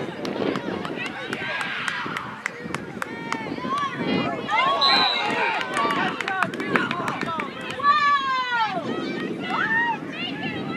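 High-pitched voices shouting and calling out across a lacrosse field during play, in short overlapping cries and one long falling call near the end, with scattered sharp clicks among them.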